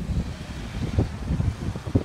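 A car moving slowly past close by, its engine and tyres heard as a low, uneven rumble, mixed with wind buffeting the microphone.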